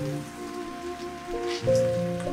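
Beef and noodle stir fry sizzling in a hot pan, with a few light scrapes of a wooden spatula tossing it, under soft background music.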